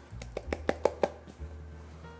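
A bowl of flour knocked against the rim of a glass mixing bowl to empty it, a quick run of taps over about a second, then quiet.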